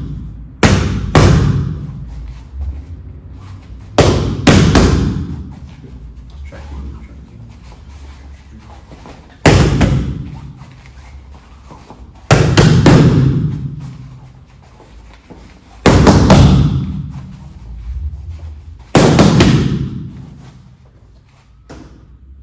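Open-hand palm strikes smacking a handheld focus pad in quick chain bursts of two or three hits. The bursts repeat about every three to four seconds, each trailing off in the room's echo.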